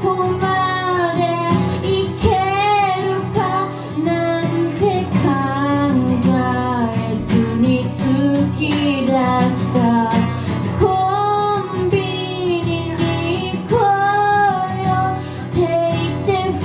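A solo singer singing a song to their own strummed acoustic guitar, the voice holding long notes that waver in pitch over continuous chords.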